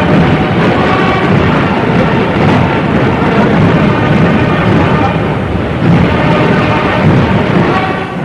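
Steam train arriving in a station: a loud, continuous rumble and hiss. Newsreel music fades out under it in the first second or so.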